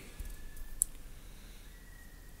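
Quiet room tone in a pause between spoken sentences, with a faint low hum and one short, sharp click a little under a second in.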